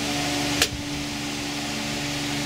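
A steady mechanical hum in the background, with one sharp click a little over half a second in as a drive power cable connector is worked loose from the SSD.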